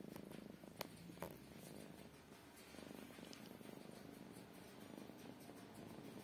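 Domestic cat purring faintly and steadily close to the microphone, with two soft clicks about a second in.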